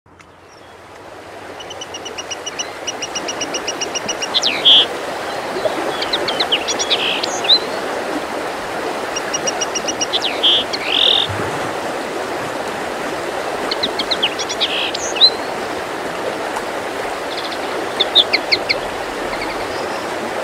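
Small songbird singing: each phrase is a fast run of evenly repeated high notes that ends in a short flourish, coming about every four to five seconds. Under it runs a steady rushing background noise, and the sound fades in over the first two seconds.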